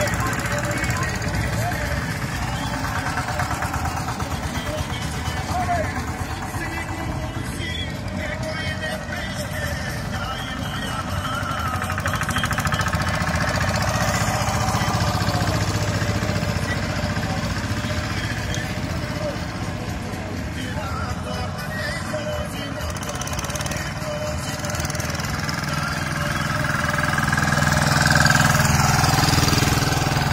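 Two-wheel walking tractors (motokultivators) chugging along while pulling trailers full of people, with a rapid, even engine beat throughout. Voices and music sound over the engines, and the sound swells near the end as a tractor passes close.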